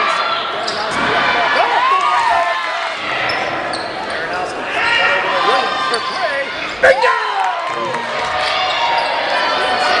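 Basketball sneakers squeaking on a hardwood gym floor in short rising and falling chirps, with the ball bouncing and players' voices echoing in the hall. One sharp thud about seven seconds in.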